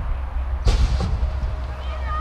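BMX start gate dropping at the start of a race: one sharp bang about two-thirds of a second in, then a second, weaker knock just after, over a steady low rumble.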